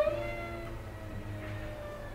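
Violin and cello duet playing long held notes with slow pitch slides. A loud high note at the very start breaks off, then quieter sustained and gliding tones carry on.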